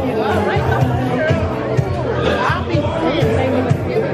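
Music with a steady bass line playing under the chatter of many people talking at once.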